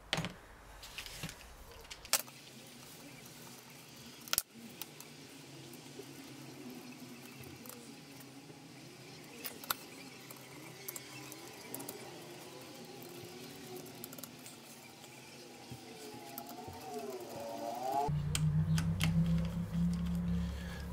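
Quiet workshop sounds: a few sharp metallic clicks and clinks of hand tools on the gearbox casing, one of them loud a few seconds in, over faint background music. A steady low hum starts near the end.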